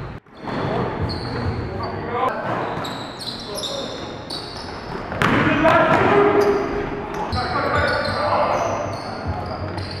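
Live basketball game sound in a gym: sneakers squeaking in short, high chirps on the hardwood court, with the ball bouncing and players' voices calling out, loudest about five seconds in.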